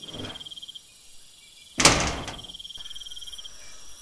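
A steady cricket chirp as a night-time sound effect, with a sudden loud noise about two seconds in that fades away over about half a second.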